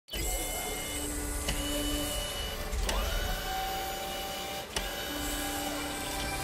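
Mechanical sound effects of small electric motors whirring, like a printer or servo mechanism, with a rising whine about halfway through and several sharp clicks.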